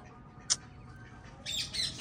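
Caged birds calling: one sharp, high squawk about half a second in, then a quick run of high chirps near the end.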